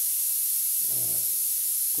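Steady high-pitched hiss of recording noise, with a brief hesitation sound ('uh') from a man's voice about a second in.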